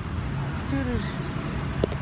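Steady low rumble of downtown street traffic and vehicle engines, with a short faint voice about a second in.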